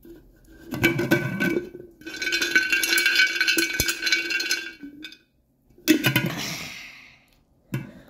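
A hand rummaging through dog dental treats inside a glass jar, the chews rattling and clinking against the glass, which rings. About six seconds in there is a short clatter as the jar's metal lid is handled.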